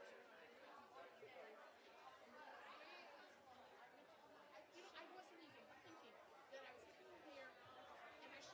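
Faint chatter of several people talking at once, with no single voice standing out.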